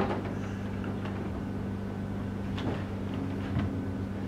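Quiet room tone of a small theatre: a steady low hum, with a few faint small knocks.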